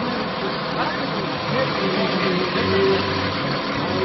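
A large vehicle's engine idling steadily, with faint voices in the background.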